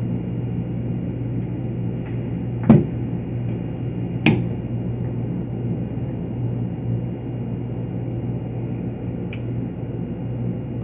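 A handheld digital multimeter being handled and set down on a plastic trainer board: two sharp knocks about a second and a half apart, a few seconds in, and a faint click near the end, over a steady low hum.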